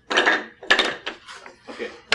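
Small wooden workpieces being handled and knocked together, then set down on a table saw top: a few sharp wooden clacks and scrapes.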